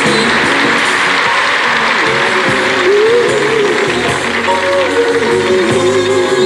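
Old-school gospel music from a live recording, with audience applause under it that is strongest in the first half. After about three seconds a single voice or instrument holds a note that wavers up and down.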